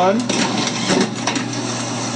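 Bourg SBM booklet maker running, a busy mechanical clatter of rapid, irregular clicks and knocks over a steady hum as it stitches, folds and trims booklet sets.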